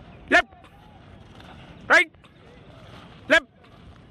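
A man's voice giving short single-syllable shouted calls, three of them about a second and a half apart, each falling in pitch, like a drill instructor's count. Faint steady outdoor background noise lies underneath.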